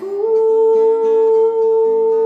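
A woman's voice holding one long, steady note over a softly strummed guitar, in a sung setting of a poem.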